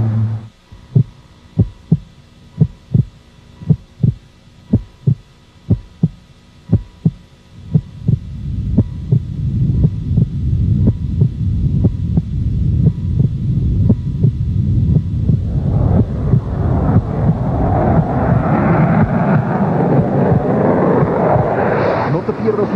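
A heartbeat sound effect in a TV promo soundtrack: deep thumps in pairs, about one pair a second. From about eight seconds in a low rumble builds under them, and from about fifteen seconds in it swells into a loud, rushing noise.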